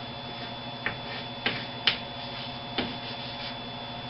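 Chalk writing on a blackboard: a handful of short taps and scrapes as a word is written, over a steady background hum.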